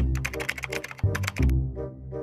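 Rapid keyboard-typing clicks as a sound effect over background music with a steady bass. The clicks stop about a second and a half in while the music continues.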